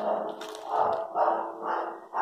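A dog barking about four times in quick succession.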